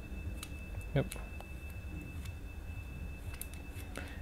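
Faint ticks and taps of small metal fittings as an airbrush's inline water-and-dust filter is joined to the air hose connector, over a steady faint high whine and low hum.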